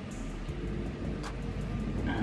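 Hard-bristled hairbrush rubbing steadily over hair stiffened with hairspray as it is brushed back flat.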